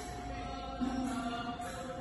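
Devotional mantra chanting with music, the chanted phrases swelling about once a second.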